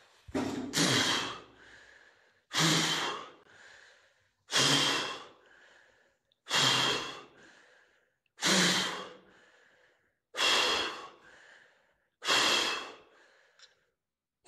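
A man breathing hard close to the microphone: loud, breathy exhalations, about one every two seconds, seven in all.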